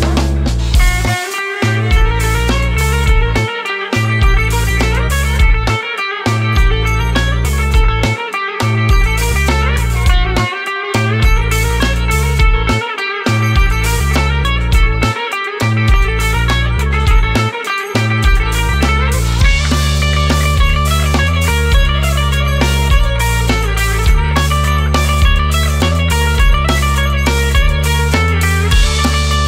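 Live instrumental band music: an electric guitar plays a riff over synth bass and drums. For the first two-thirds the bass drops out briefly about every two and a half seconds; after that the bass runs on and the band fills out.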